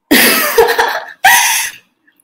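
A person coughing twice, loudly: a longer cough of about a second, then a shorter one.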